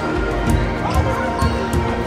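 Background music with a low drum beat about twice a second.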